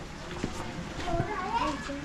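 Young children's voices chattering and calling out, several high voices overlapping.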